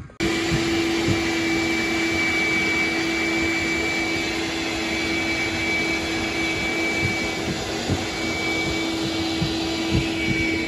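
Ridgid wet/dry shop vacuum running steadily, sucking up the last standing water from the floor of a drained pool. It cuts in suddenly just at the start, with a steady hum and a high whine.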